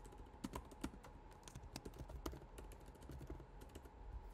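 Typing on a computer keyboard: quick, irregular keystrokes, faint, as a line of code is entered.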